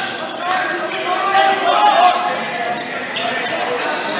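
A basketball being dribbled on a hardwood gym floor, amid steady crowd chatter that echoes in a large gymnasium.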